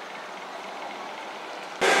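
Steady, even outdoor background noise with no distinct events. Near the end it cuts abruptly to a louder indoor hubbub.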